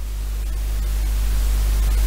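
Steady electrical hum and hiss from the microphone and recording chain, with no speech, growing slightly louder through the pause.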